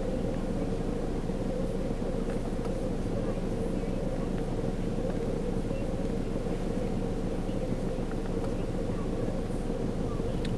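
Steady low hum of an idling car engine, unchanging throughout.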